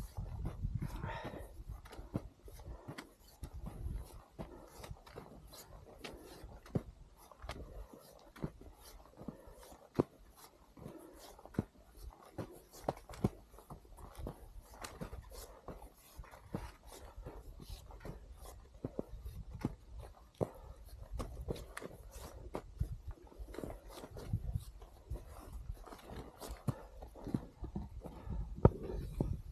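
Footsteps and trekking-pole strikes in snow on a steep climb: irregular sharp crunches and clicks, about one or two a second, over low rumbling on the body-worn microphone.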